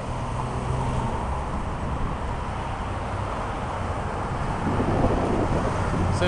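Steady street noise of road traffic, with wind on the microphone.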